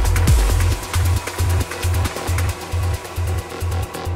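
Deep techno from a DJ mix: the kick drum drops out about a second in, leaving a pulsing bassline and ticking hi-hats.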